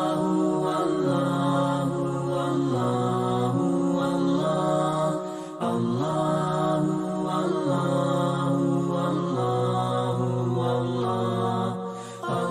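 Outro music: a chanted vocal piece of long held notes that step up and down in pitch, with a brief dip about five and a half seconds in.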